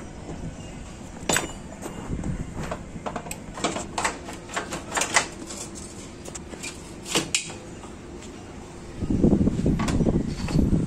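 Hand tools working on the steel bolts of a motorcycle's rear frame: a run of short, sharp metallic clicks and taps as a wrench is fitted and turned. A louder, duller burst of handling noise comes near the end.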